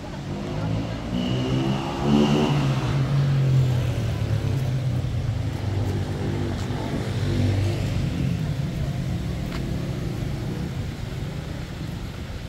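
A motor vehicle's engine passing close by, its pitch rising as it gets louder about two to four seconds in, then slowly fading away.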